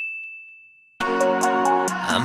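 A single high, bell-like ding fading away over the first second: a transition sound effect. Music then starts abruptly about a second in.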